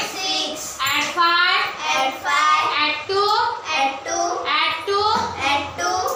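A young girl's voice chanting a sum in a steady sing-song rhythm: numbers called one after another with short breaks, as in reciting an abacus addition-and-subtraction drill.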